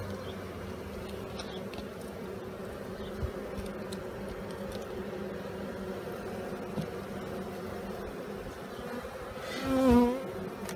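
Honeybees in an open hive giving a steady hum. Near the end a louder buzz swells and wavers in pitch as a single bee passes close by.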